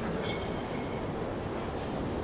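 Steady low rumbling background noise in a large hall, even in level, with no distinct notes or strikes standing out.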